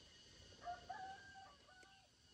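A rooster crowing faintly: one crow of about a second and a half, starting about half a second in, with its pitch stepping up and then down.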